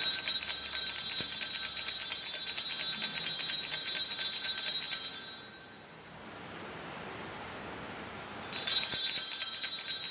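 Altar bells shaken in a rapid jingling peal for about five seconds, then again from about eight and a half seconds in: the sanctus bells rung at the elevation of the chalice during the consecration.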